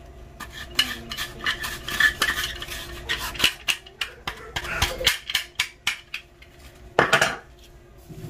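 A gloved hand mixing chunks of seasoned raw meat in a glass bowl: wet squishing with irregular clicks and knocks against the glass, and a louder scrape about seven seconds in.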